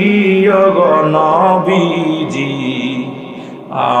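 A man chanting a sermon in a drawn-out, melodic sung style into microphones, holding long notes that slide in pitch. His voice drops away briefly just before the end, then comes back with the next sung phrase.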